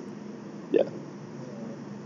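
Mostly faint room hiss, with a single short spoken syllable, "ya", about three quarters of a second in.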